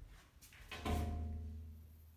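A semi-frameless glass shower-screen door swung open on its pivot by its chrome knob, giving a sudden knock almost a second in, followed by a low ringing tone that fades over about a second.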